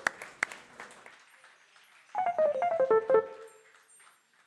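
Scattered applause dying away in the first second. About two seconds in, an electronic keyboard plays a quick run of notes stepping down in pitch and ends on a short held note.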